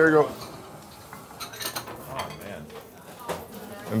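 Café table sounds: a few scattered light clinks of plates and cutlery over faint background voices.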